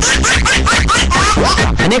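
Radio station jingle or sound-effect bed: a quick run of short rising zip-like sweeps, about three or four a second, over a pulsing bass beat. A man's voice comes back in at the very end.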